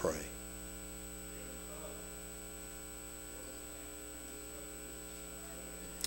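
Steady electrical mains hum with a thin high-pitched tone above it, picked up by the microphone and sound system. A voice is faintly audible under the hum.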